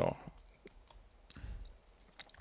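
A few faint clicks from a computer keyboard, with a soft low bump about a second and a half in.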